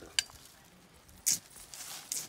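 Machete blade working into loose soil: a sharp tick just after the start, then a short gritty scrape a little past halfway.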